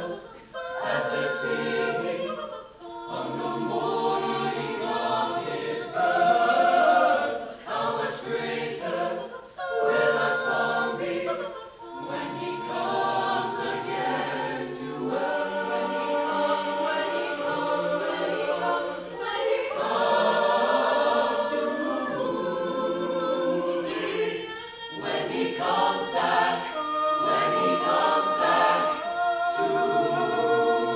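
Choir of mixed voices singing a cappella in several parts, phrase after phrase with short breaths between them.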